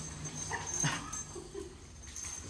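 Lab-mix dog giving a few short whimpers, excited at being reunited with its owner.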